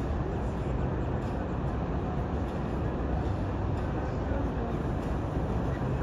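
Steady low rumble of harbour background noise, even throughout with no distinct events.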